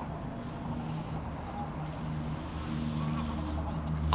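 A distant engine running: a low, steady drone with a faint hum.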